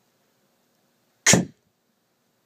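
A person voicing the /k/ letter sound once, a short breathy 'k' burst about a second and a half in.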